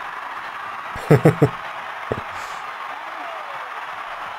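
A man laughs briefly, three quick chuckles about a second in, over a steady, muffled stadium crowd noise from a rugby league broadcast playing in the background.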